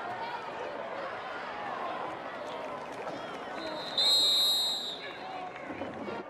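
Stadium crowd noise with indistinct voices during a football play. About four seconds in, a referee's whistle blows shrill and steady for about a second, blowing the play dead after the tackle.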